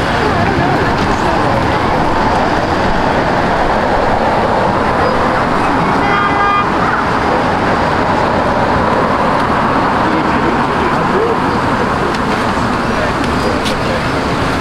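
Steady city street ambience: road traffic passing, with passers-by talking. There is one short horn toot about six seconds in.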